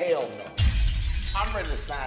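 A sudden loud shattering crash breaks in about half a second in, with a man's laughing voice over it.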